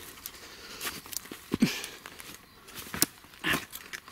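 Footsteps crunching through dry grass and leaf litter, with brush scraping and twigs snapping as someone pushes through thick scrub. The crunches and crackles are irregular, with a sharper knock about one and a half seconds in.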